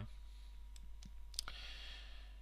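Three or four faint, sharp clicks in a pause between words, the sharpest about a second and a half in, over a low steady hum.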